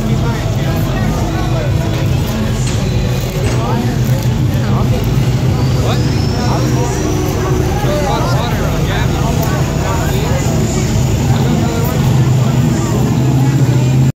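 A 1993 GMC pickup's engine running steadily under load as it pulls a sled, a continuous low drone, with a high whine rising in pitch about six seconds in. People's voices carry over it.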